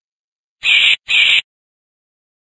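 Recorded bat call: two short, harsh screeches in quick succession, each sliding slightly down in pitch.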